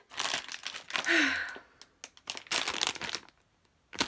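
Crinkling of a plastic toy bag as it is picked up and handled, in several bursts over about three seconds, with a sigh. It goes quiet shortly before the end.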